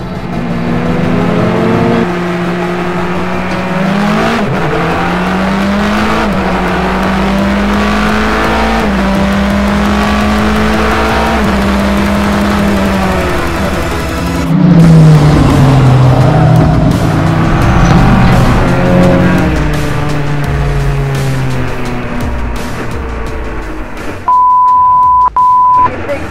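Race car engine running hard at speed, its pitch holding, then falling and climbing with gear changes and braking, with other race cars running close by. Near the end a steady, high single-tone beep cuts in for about a second and a half.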